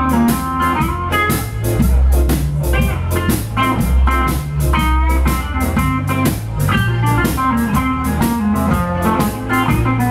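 Live blues band playing an instrumental passage: a hollow-body archtop electric guitar plays lead lines over a steady drum kit beat and low bass notes.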